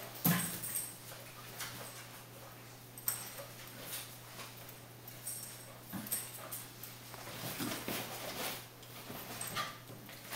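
Small dogs moving about over a toy, giving a few brief whines amid scattered soft knocks and rustles, over a faint steady low hum.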